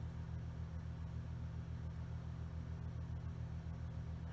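A steady low hum with a fast, even pulsing in its lowest part and faint hiss above it.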